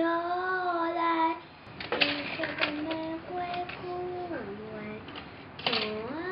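A young girl singing unaccompanied: long held notes that slide from one pitch to the next, with a short pause about a second and a half in.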